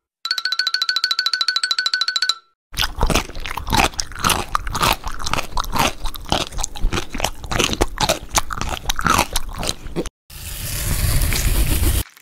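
A brief buzzing cartoon sound effect with steady high tones, then about seven seconds of crisp, irregular crunching of a KitKat chocolate wafer being bitten and chewed. Near the end a hissing swell rises in level.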